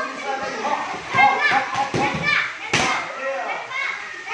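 Children's voices chattering and calling, with two sharp smacks of gloved punches landing on a trainer's pads in the second half, the second one the loudest.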